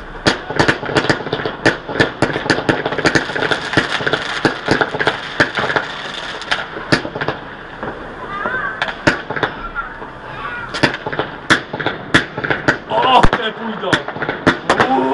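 New Year's Eve fireworks and firecrackers going off all around: a dense, rapid run of sharp bangs and cracks for the first half, then sparser, separate bangs.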